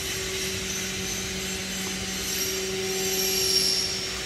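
Steady machinery hum in a workshop: a low, even drone with two constant tones under a steady hiss.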